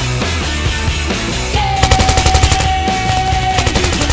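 Two rapid bursts of automatic rifle fire, the first about two seconds in and a shorter one near the end, over loud rock music.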